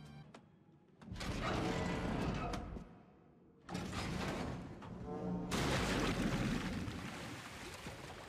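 Animated TV episode soundtrack: music mixed with sound effects and a little dialogue, quiet for the first second, then coming in loud, dropping out briefly about three seconds in and returning.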